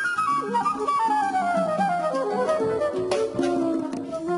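Jazz combo of flute, piano, drums and hand percussion playing; the flute plays a long stepped run downward over the first three seconds over a steady low accompaniment, with a sharp drum accent about three seconds in.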